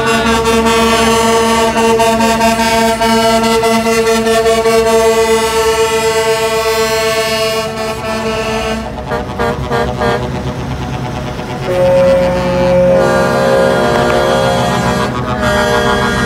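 Semi-truck air horns sounding long, held blasts as the tractor units pass, several notes at once. One chord holds for about the first nine seconds, then the horn sound changes and a new held blast starts about twelve seconds in.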